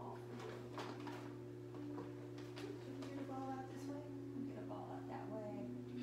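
Background music and faint talk over a steady low hum, with a few light splashes of water from the dog swimming in the pool.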